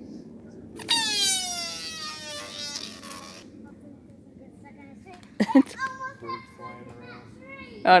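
A screaming balloon: an inflated toy balloon letting its air out through a noisemaker, a loud squeal that starts about a second in and falls steadily in pitch over about two and a half seconds as the balloon empties.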